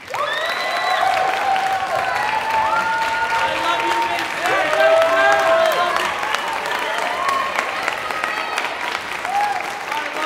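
Audience applause starting suddenly and continuing steadily, with many voices whooping and cheering over the clapping.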